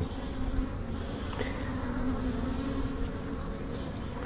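A large honeybee colony buzzing in an opened brood box: a steady, even hum of many bees.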